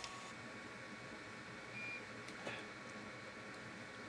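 Quiet room hiss with a brief faint high beep about two seconds in, followed by a soft click.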